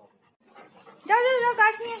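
A dog's long, drawn-out vocal call starting about a second in, loud and pitched, falling slightly as it goes.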